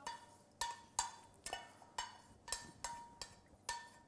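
Light metal taps, about two a second, each with a short ring, as melted butter is tipped and knocked out of a copper saucepan into a stainless steel bowl.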